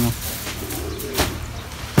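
A faint, low bird call lasting about half a second, followed by a single sharp click about a second in.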